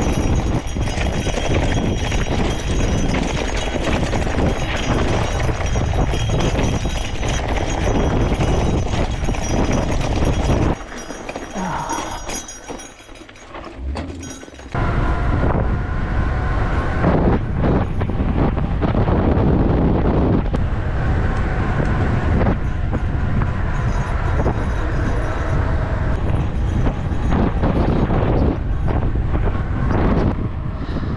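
Gravel bike speeding downhill: its wide 650b Maxxis tyres rattle over a rocky dirt trail while wind rushes over the microphone. After a short quieter gap about eleven seconds in, a steadier rush of tyres and wind follows on smooth pavement.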